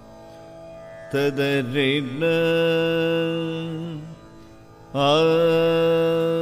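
A male voice sings improvised Carnatic vocal phrases in raga Shankarabharanam, with wavering gamaka ornaments and long held notes over a quiet steady drone. A first phrase starts about a second in. After a short pause a louder phrase begins near the end.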